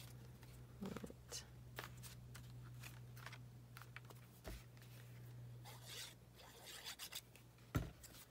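Faint rustling of torn paper scraps being picked up and handled, over a steady low hum, with a soft thump near the end.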